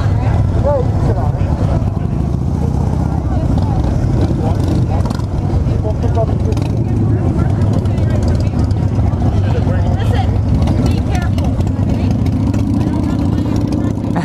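Motorcycle engines running with a steady low rumble, with people talking nearby.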